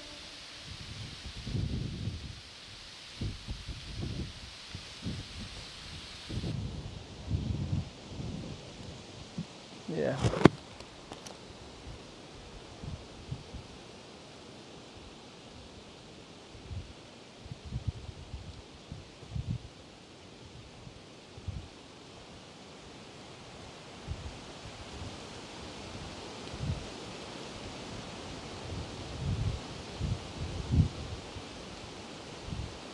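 Outdoor ambience of leaves rustling, with scattered low thumps of wind or handling on the microphone and one brief, sharp high-pitched sound about ten seconds in.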